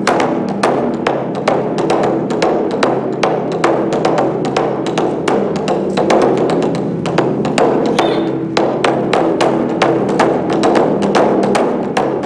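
Japanese taiko drumming: large odaiko drums struck with wooden sticks in a fast, driving rhythm of sharp strokes several times a second, over a steady held drone.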